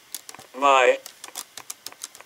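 A voice holding one drawn-out syllable about half a second in, surrounded by quick, irregular sharp clicks.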